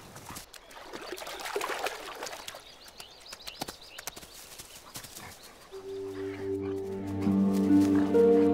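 A wolf splashing out of shallow water and rustling through grass, with scattered crackles and splashes. About six seconds in, background music with long held notes begins and grows louder.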